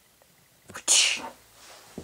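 A single short, sharp, sneeze-like burst of breath from a person about a second in, followed by faint handling sounds and a click near the end.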